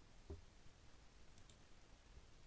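Near silence with a faint, single computer-mouse click about a third of a second in, as a drawing object is selected on screen.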